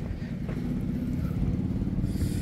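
A motor vehicle engine running steadily nearby, a low even hum.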